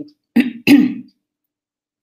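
A woman clearing her throat twice, two short rough bursts in quick succession about half a second in.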